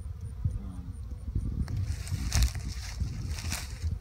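Wind rumbling on the microphone, joined about two seconds in by a louder, uneven rustling hiss.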